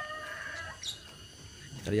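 The last part of a rooster's crow, a long held call that ends within the first second, followed by a brief high chirp.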